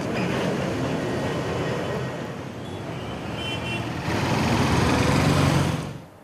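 Road traffic noise: vehicles running past on a busy road, the rumble growing louder over the last two seconds before cutting off suddenly.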